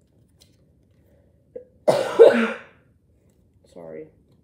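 A woman coughs once, a loud, short, harsh burst about two seconds in.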